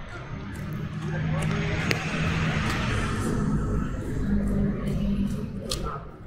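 Outdoor street background: a steady low rumble with a hiss above it that swells through the middle and eases near the end, with a voice briefly saying "okay".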